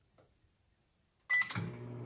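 Microwave oven keypad beeping once as Start is pressed, about a second and a half in, then the oven starting to run with a steady low hum.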